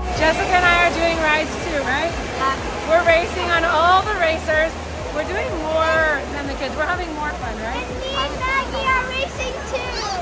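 People talking close to the microphone over steady background chatter and a low hum of a large indoor space.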